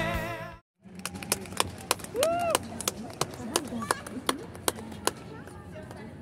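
Music fading out and stopping under a second in, then the ambience of a large hall: a string of short sharp clicks or claps, a brief rising-and-falling vocal call about two seconds in, and faint voices near the end.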